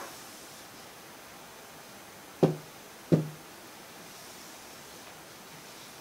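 Two short, dull knocks of a hand tapping an interactive touchscreen display, about two and a half and three seconds in, over faint room hiss.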